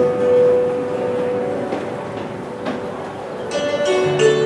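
Hammered dulcimer and acoustic guitar playing an instrumental passage. A long held note rings out, the sound thins as the notes die away through the middle, and bright new dulcimer strikes come in near the end.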